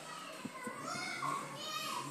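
Children's high-pitched voices, talking and playing.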